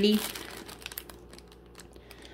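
Clear plastic cellophane packet of heart-topped wooden picks crinkling as it is handled, a run of small crackles that is busiest in the first second and then thins out and fades.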